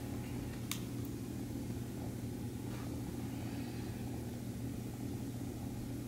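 Low steady background hum of room noise, with one faint click just under a second in.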